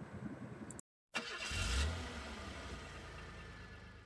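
Faint room tone and a brief cut to dead silence, then a low rumble with hiss that swells and slowly fades away: an outro sound effect.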